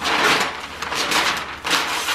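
Wrapping paper being ripped off a large cardboard toy box, a noisy tearing and crinkling rustle in several pulls, loudest at the start.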